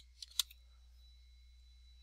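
A few quick computer keyboard keystrokes in the first half-second, typing a number, then only a faint steady low hum.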